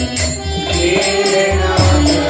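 Devotional chanting (kirtan) sung to music, with jingling hand percussion and a low drum beat roughly once a second.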